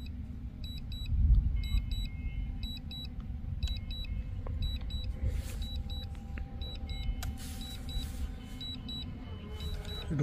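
Short high-pitched beeps in quick pairs, repeating every second or so, typical of a drone remote controller's warning alarm, over a steady low rumble.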